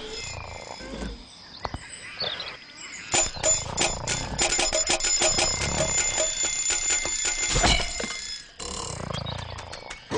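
Alarm-clock-style bell ringing with rapid strikes, starting about three seconds in and lasting about five seconds. It stops with a sharp thud, followed shortly after by a brief rush of noise.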